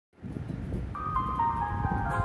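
Karaoke backing track beginning: a rhythmic low beat, joined about a second in by a descending line of held, higher notes.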